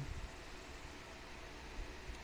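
Quiet room tone: a steady faint hiss over a low hum, with no distinct clicks or other events.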